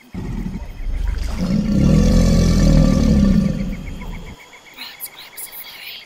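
Logo sound effect: a deep rumble with a growl in it that starts suddenly, swells to its loudest about two seconds in and cuts off about four seconds in. A steady, pulsing cricket chirp runs underneath, with a few higher chirps near the end.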